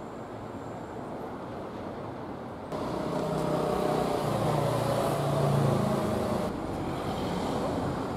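Street traffic noise with passing cars. It gets suddenly louder about three seconds in, where a vehicle's engine hum rises and fades, then drops back near the end.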